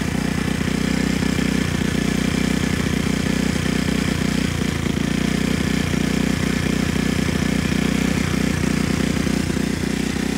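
The Talon 150 go-kart's 150 cc engine idling steadily, running again on a new carburettor and ignition system.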